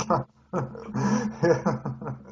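Men laughing, with short voiced bursts and breathy puffs.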